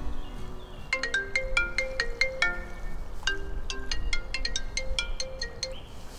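Mobile phone ringtone: an incoming call. A melody of quick, short notes starts about a second in, plays on and stops just before the end.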